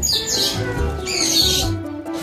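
Background music with a steady beat, with high chirping sounds near the start and again about a second in.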